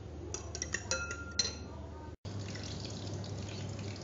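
Metal spoon beating raw eggs in a ceramic bowl, with several quick ringing clinks against the bowl's side in the first two seconds. After an edit cut, only a steady low hum remains.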